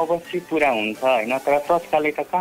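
Speech: a person talking continuously in a radio programme, with no other sound standing out.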